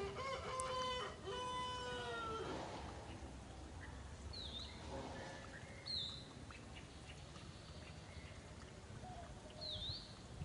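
Two drawn-out pitched animal calls, one after the other, in the first two and a half seconds, the second trailing off downward; then a few short, high bird chirps.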